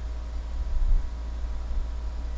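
Low steady rumble from an open lectern microphone, with a soft low thump a little under a second in.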